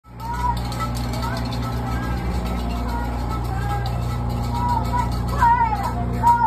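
Tour bus engine idling with a steady low hum, while a person's voice rises and falls over it and swoops up and down more sharply near the end.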